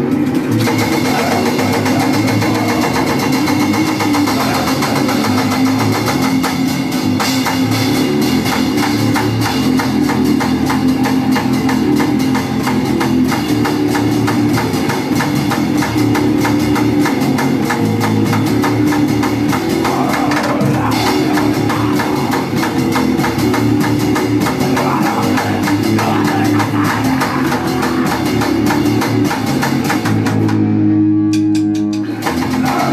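A grind/crust punk band playing a song live: distorted electric guitars and bass over fast, dense drumming, loud and unbroken.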